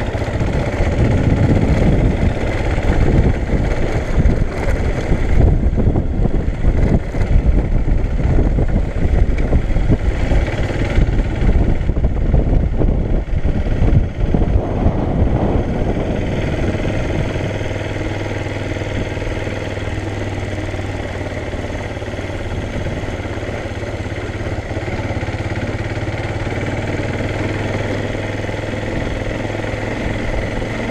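Motorcycle riding along a dirt road: the engine runs under a rough, uneven rumble for the first half, then settles into a steadier drone from about halfway through.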